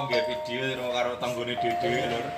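Gamelan music: ringing metallophone notes that hold and step between two pitches, with voices over them.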